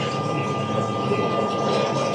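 A steady mechanical rumble with hiss, even in level throughout, like a running engine in a film's soundtrack.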